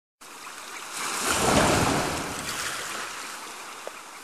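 Sound effect of an ocean wave surging, a rushing hiss that swells to a peak about a second and a half in and then slowly dies away.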